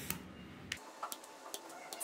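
Small scissors snipping cotton candle wicks: four or five faint, sharp clicks, roughly half a second apart.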